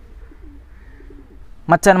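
A bird cooing faintly, two short low phrases, before a man starts speaking near the end.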